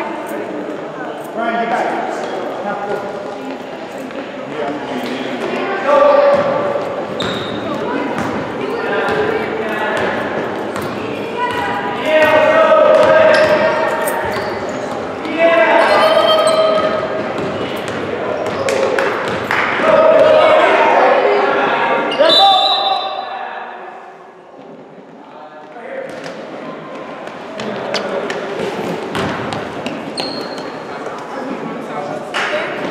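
A basketball dribbled on a hardwood gym floor during live play, with spectators and players yelling, echoing in a large gym. The noise drops sharply a little after three-quarters of the way through.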